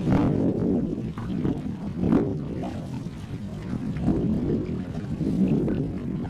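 Wind buffeting the camera's microphone: a low rumble that rises and falls throughout, with a couple of brief knocks about two seconds apart.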